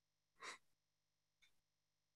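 Near silence, broken by one short intake of breath about half a second in and a fainter brief noise about a second later.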